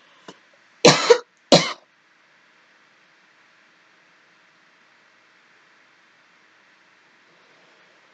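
A person coughing twice in quick succession about a second in, followed by faint room hiss.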